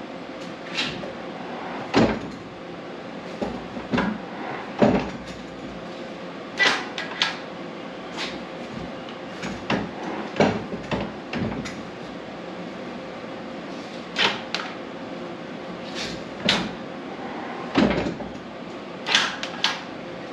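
Irregular mechanical clicks and clunks, a dozen or so, some in quick pairs, from a 1998 Honda 450ES ATV as its electric shift moves the transmission from first into second gear and back to neutral, with the machine stationary.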